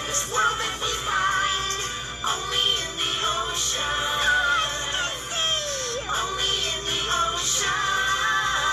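A children's TV promo song: voices singing over backing music, played from a television set.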